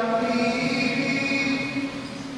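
A singing voice holding one long, steady chanted note that fades away near the end.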